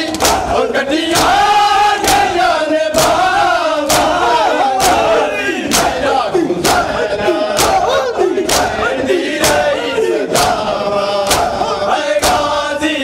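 A crowd of men performing matam: open hands slapping bare chests in unison, a sharp collective slap about once a second. Between the slaps, men's voices chant a mourning lament (noha) in rhythm with the strokes.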